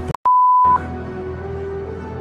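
A single loud electronic beep: one steady pure tone about half a second long, coming just after the music cuts out with a click. Sustained music then resumes.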